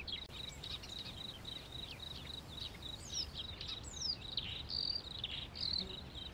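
Small birds chirping: many short chirps and quick falling whistles, over a steady high pulsing trill.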